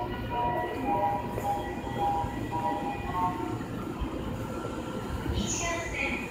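Train and platform sounds at a railway station, with a run of short steady tones that change pitch about every half second in the first half, over a low rumble. A brief high hiss comes near the end.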